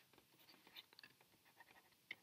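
Near silence with a few faint, light taps of a stylus writing on a tablet screen.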